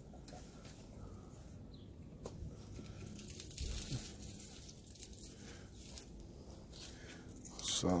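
Quiet, intermittent rustling and tearing of leaves as they are pulled by hand off a pluerry tree branch, a little louder about three and a half seconds in. The tree is being defoliated to force it into winter dormancy.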